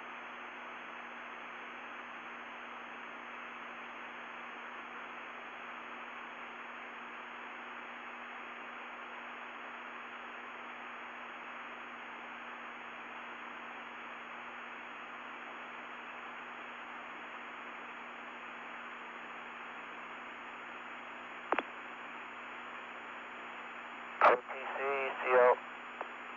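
Steady hiss of an open radio communications channel with a low hum under it, broken by a single click about 21 seconds in and a brief burst of garbled radio voice near the end.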